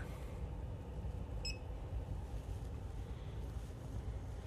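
A single short electronic beep from the bench test equipment about a second and a half in, over a steady low background hum.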